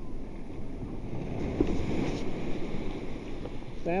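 Ocean surf washing in over the sand at the water's edge: a steady rush of breaking waves that swells a little toward the middle.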